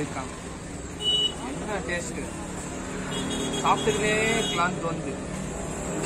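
Roadside traffic noise with vehicles running by and people talking nearby.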